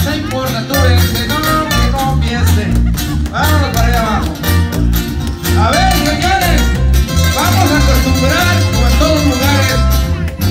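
Live tierra caliente band playing a dance number through the hall's PA, with a steady, repeating bass beat under the melody.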